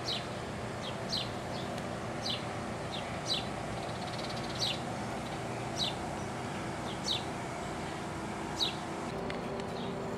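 A bird repeating one short, falling chirp about every second, around eight times, over a steady low background hum.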